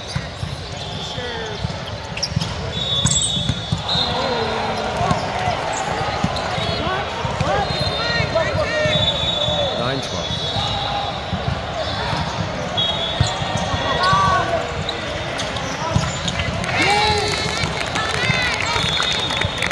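Indoor volleyball match in a large echoing hall: ball contacts and sneakers squeaking on the court over a steady mix of players' and spectators' voices and shouts.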